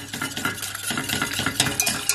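Wire whisk beating a thickening cornstarch-and-water paste in a stainless steel saucepan, its wires clicking and scraping against the pan in quick, uneven strokes.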